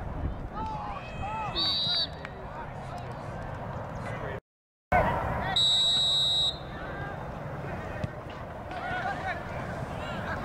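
Outdoor soccer match sound: players and sideline spectators shouting across the field. A referee's whistle sounds briefly about two seconds in, and a longer, louder whistle blast comes a little past the middle. The sound drops out completely for about half a second just before the second whistle.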